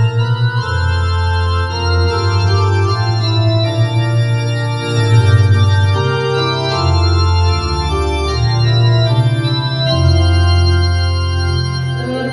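Electronic keyboard on a church-organ voice playing sustained chords over a deep bass line that steps to a new note every second or two.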